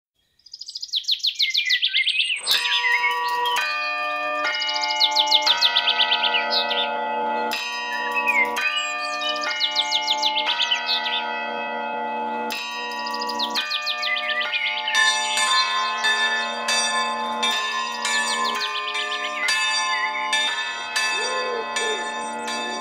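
Church bells pealing: several bells of different pitch are struck about once a second, each ringing on, and the strikes come closer together in the second half. Birds chirp and trill over the bells, and birdsong is heard alone for the first two seconds before the bells begin.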